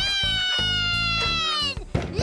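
A cartoon boy's long, drawn-out wail of crying, held on one pitch and sliding slightly down, over background music. A sharp knock on a door near the end.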